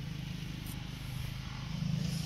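An engine running steadily, a low hum with no change in pitch.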